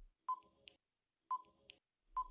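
Countdown timer sound effect: two short, faint electronic beeps a second apart, each followed by a fainter tick, counting down the seconds.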